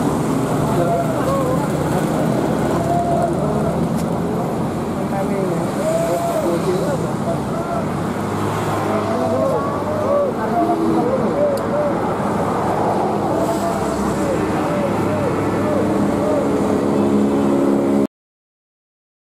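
A bus's diesel engine running steadily, under the indistinct talk of people standing nearby. The engine hum grows a little stronger near the end.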